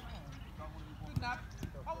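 Footballs being kicked on a grass training pitch: a couple of sharp knocks about a second in, under faint shouts of players and coaches.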